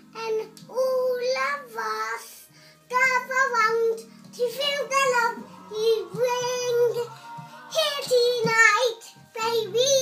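A young girl singing a song unaccompanied, in sung phrases with short pauses between them.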